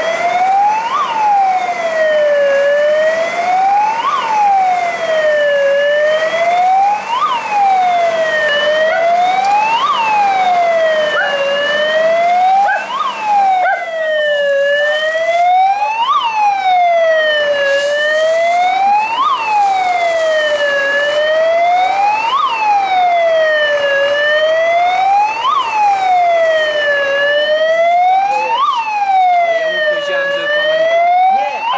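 Fire engine's siren wailing, its pitch sweeping up to a sharp peak and back down about every three seconds, over and over.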